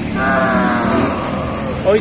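A man's single long wordless vocal call, held for most of two seconds with its pitch sinking slowly.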